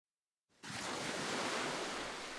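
Near silence at first; about half a second in, a steady wash of ocean surf fades in and holds.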